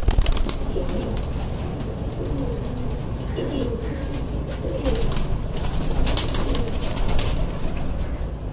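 Saharanpuri Topidar pigeon's wings clattering loudly as it is released from the hand, followed by pigeons cooing. A second run of wing flapping comes in the last few seconds.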